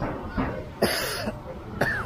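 A person coughing twice close by, a longer cough just under a second in and a short one near the end, with faint voices around.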